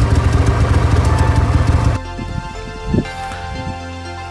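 Background music over snowmobile engine noise. The engine is loud and pulsing for the first two seconds, then after a sudden drop it becomes a quieter steady hum.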